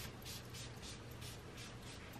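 Perfume atomizer being spritzed over and over: faint quick hisses, about four a second.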